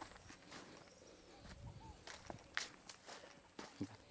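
Footsteps crunching softly on dry fallen leaves, a few irregular steps.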